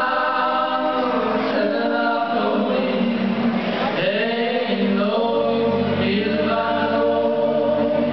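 Two male voices singing a slow song together in live concert with band accompaniment, holding long notes. A low bass part comes in about five seconds in.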